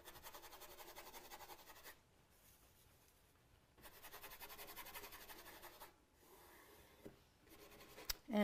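Faint scratchy rubbing of a paintbrush's bristles on canvas, in quick short strokes about six a second. It comes in two runs of about two seconds each, with a pause between.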